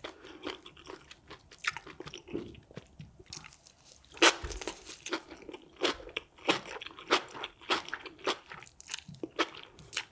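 Close-miked eating: a person bites into and chews sauce-coated food, with wet crunching and mouth clicks and smacks in an irregular stream. The loudest crunch comes about four seconds in.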